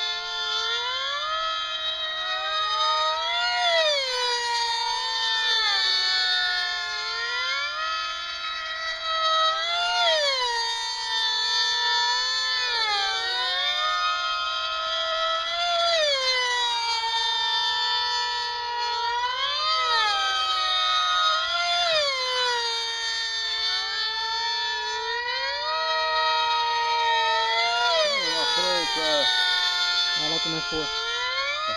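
Several F3D pylon-racing model airplanes running their small two-stroke glow engines flat out with a high, overlapping whine. Each engine's pitch rises as its plane approaches and drops as it passes, over and over as the planes lap the pylons every few seconds.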